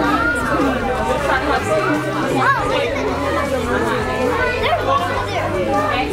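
Indistinct chatter of several overlapping voices, steady throughout, with no single voice standing out.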